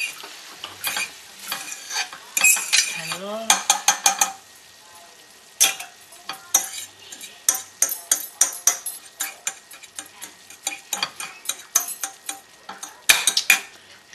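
A utensil stirring and scraping cooked ground turkey in a frying pan, the meat sizzling, in a run of quick strokes with a short pause about five seconds in.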